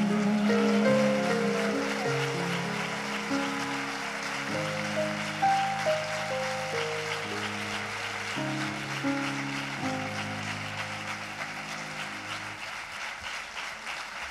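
Grand piano playing the closing bars of a slow ballad, held notes and chords changing every second or two and slowly getting quieter, with a light patter of audience applause beneath.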